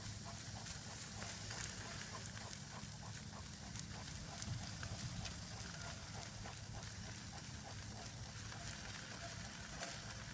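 Dog sulky rolling along a dirt road behind a trotting Great Dane: a steady low rumble with many small scattered ticks and crunches.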